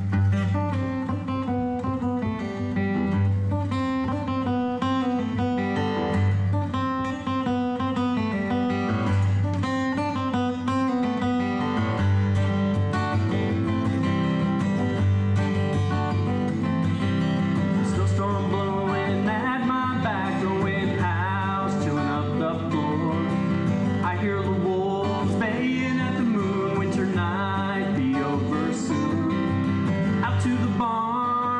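A solo steel-string acoustic guitar playing a song intro of repeated notes. A man's singing voice comes in over it a little past halfway through.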